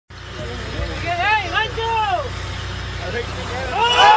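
Men on a boat deck shouting and exclaiming in excitement, over the low steady hum of the boat's engine. The voices swell again near the end as the shark breaks the surface.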